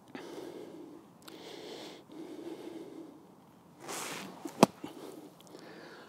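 A golf club strikes the bunker sand once, a sharp thud about four and a half seconds in, as an explosion shot splashes the ball out over a steep lip. Before it, faint breathy rustling.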